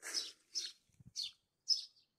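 A small bird chirping: four short, high chirps about half a second apart.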